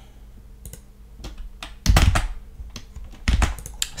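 Typing on a computer keyboard: an irregular run of keystrokes, with two louder, heavier strokes about two seconds and three and a quarter seconds in.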